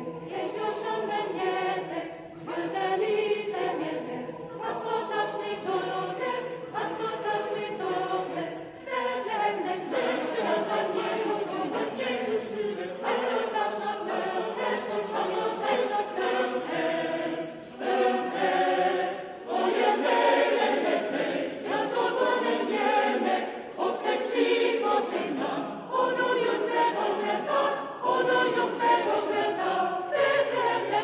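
Mixed choir singing a Christmas carol in a reverberant church, in several overlapping voice parts, phrase by phrase with brief breaths between phrases.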